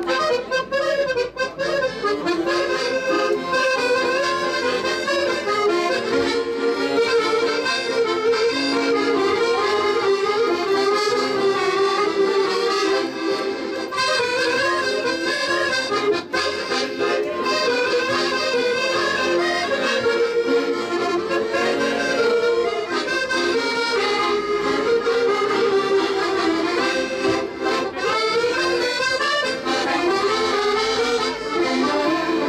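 Ensemble of button accordions playing a lively traditional tune together, several accordions sounding at once without a break.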